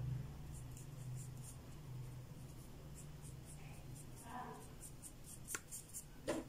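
Stiff paintbrush scrubbing black paint onto a small flat stone: faint, scratchy brush strokes, about two to three a second, over a low steady hum.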